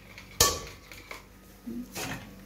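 A single sharp clink of stainless-steel kitchenware, such as a plate or pot, struck against something, with a short metallic ring that fades within about half a second.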